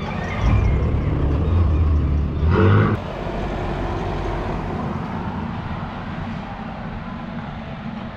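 A car engine running low as a car drives past close by, loudest just before three seconds in, then dropping away suddenly to a quieter street background.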